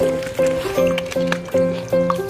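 Background music: a bouncy melody of short, evenly spaced notes, about two and a half a second.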